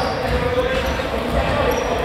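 A basketball bouncing on an indoor court during play, with players' voices echoing around a large sports hall.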